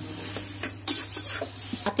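Steel spatula stirring and scraping a minced fish, onion and tomato mixture in a steel kadai over a high flame, the food sizzling steadily as its water cooks off. A few sharper scrapes of metal on the pan come about a second in and near the end.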